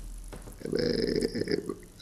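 A short, low, buzzing throaty vocal sound lasting about a second, like a creaky drawn-out 'ehh'.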